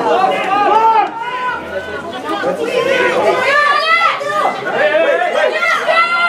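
Several voices shouting and calling over one another at once, with no single voice standing out, from the crowd and players during open rugby play.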